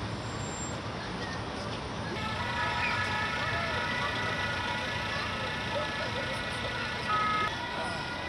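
A police water-cannon truck running with a steady high whine of several held tones. A short, louder tone sounds near the end.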